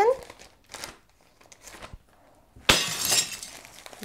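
Plastic parcel packaging, a mailer bag and bubble wrap, handled while being unpacked: a few faint rustles, then, about two and a half seconds in, loud crinkling of plastic that goes on for over a second.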